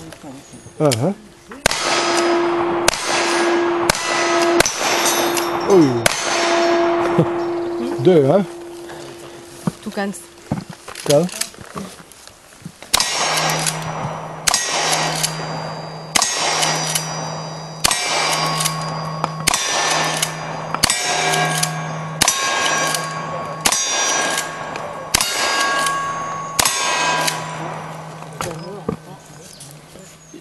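Gunshots, each followed by the ring of a struck steel target. A quick run of handgun shots fills the first several seconds. After a pause comes a steady string of rifle shots at about one a second, each with its own ring of steel.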